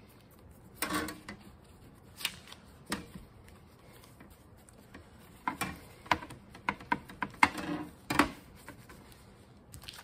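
A cloth rag scrubbing an etched copper plate with mineral spirits to wipe off the hard ground: irregular bursts of rubbing and rustling with scattered sharp clicks and taps as the plate shifts on the table, busiest in the second half.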